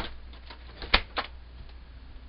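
Several sharp clicks over a steady low hum: one at the start, the loudest just under a second in, and another shortly after.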